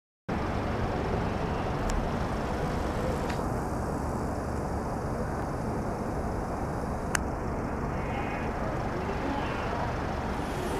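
Steady low rumble of city road traffic, with a single sharp click about seven seconds in.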